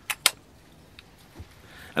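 Plastic body cap being fitted and twisted onto the lens mount of a Fujifilm X-T30: two sharp clicks just after the start, then a faint tick about a second in.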